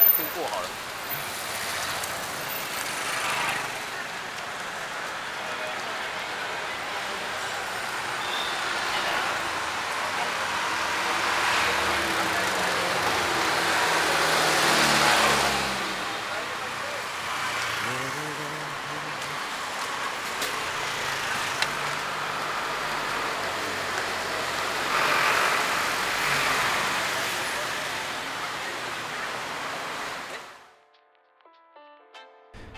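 Street traffic on a busy city street: cars, motorbikes and three-wheeler auto-rickshaws passing, with the chatter of passers-by. The traffic grows louder in two swells, about halfway through and near the end.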